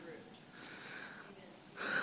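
Faint room tone in a pause of a man's speech, then near the end a short, audible breath in.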